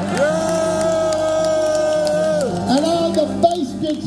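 Live rock band playing under the band introductions. One long held note bends up at the start and drops off about two and a half seconds in, over a low repeating backing vamp. Shorter wavering notes follow.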